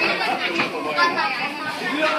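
Many voices chattering at once, children's among them, with no single speaker standing out.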